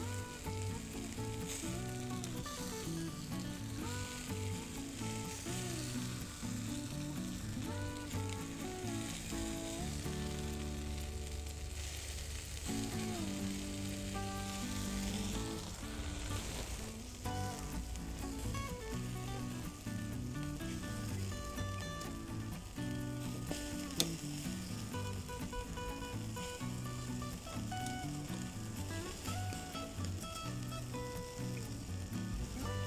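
Mett patties and bacon sizzling steadily on a grill, under background music with a running melody. A single sharp click comes about 24 seconds in.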